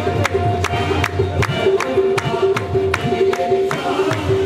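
Live qawwali music: harmoniums holding steady notes over a steady beat of sharp percussive strokes, about two and a half a second.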